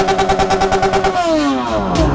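Motorcycle engine held at high revs with a rapid, even pulsing, then the revs fall away in the second half.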